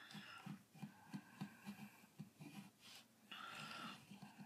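Faint pencil strokes on paper: a run of short, irregular scratches several times a second.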